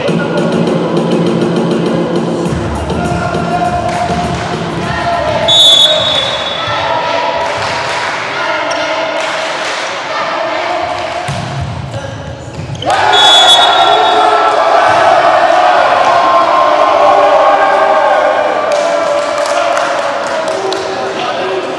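Indoor volleyball rally in a hall: a steady loud mix of crowd voices and music. There is a short high whistle about five and a half seconds in, with ball hits around it, and another whistle about thirteen seconds in, after which the crowd noise gets louder as the point is won.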